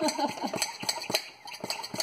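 Hand-squeezed brake bleeder vacuum pump being worked in a steady rhythm, a sharp click about three to four times a second, drawing the air out of a mason jar through tubing and a jar-sealer attachment to vacuum-seal it.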